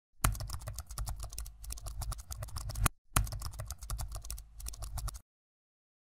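Rapid computer-keyboard typing, a typing sound effect in two quick runs of keystrokes with a short break about three seconds in, stopping a little after five seconds.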